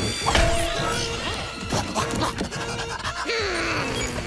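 Cartoon background music with a busy run of sound effects: rapid clicks and knocks, and a few sliding-pitch effects, one falling near the end.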